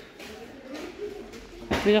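A pause in a woman's talk, filled with faint background voices, then she starts speaking again near the end.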